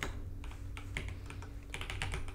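Computer keyboard typing: an irregular run of keystroke clicks, about four or five a second, over a steady low hum.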